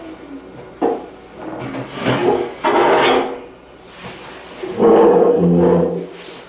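A sharp knock just under a second in, then two longer scraping, squealing noises: one around two to three seconds in and one near the end.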